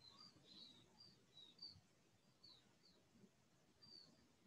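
Near silence with faint, high bird chirps, short and repeated about twice a second.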